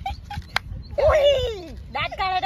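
A sharp click, then about a second in a single drawn-out vocal whine that slides steadily down in pitch for nearly a second.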